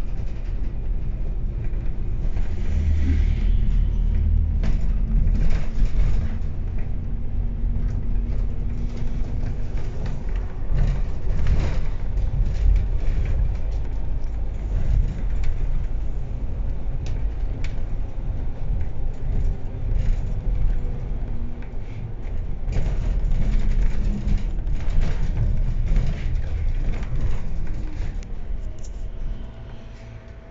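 MAN DL 09 double-decker bus heard from inside while driving: a steady low engine and road rumble, with occasional short knocks.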